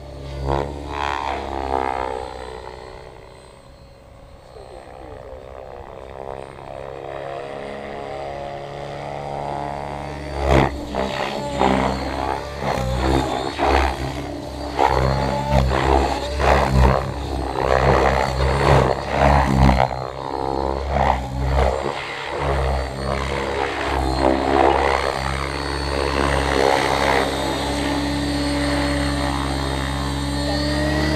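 Thunder Tiger Raptor E700 electric 700-size RC helicopter in flight: the rotor and motor tone rises and falls with the manoeuvres, fainter a few seconds in, then loud, rapidly changing surges of blade noise from about ten seconds in. It settles to a steadier, louder hover near the end as it comes down low.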